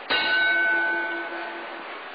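Boxing ring bell struck once to start round one, ringing with a sudden strike and then fading over about a second and a half.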